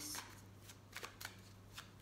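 A deck of tarot cards being shuffled by hand: a short rush of card noise at the start, then a few faint, scattered card clicks.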